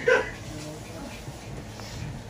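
A dog giving one short, sharp bark or yelp right at the start, then quiet room sound.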